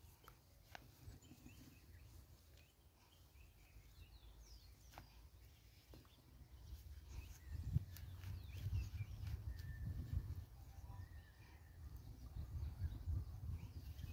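Outdoor ambience: wind rumbling on the microphone, gusting louder in the second half, with faint bird chirps. A few light clicks come from dry sticks being handled as firewood is gathered.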